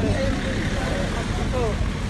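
Outdoor street-market ambience: people's voices talking in the background over a steady low rumble of traffic.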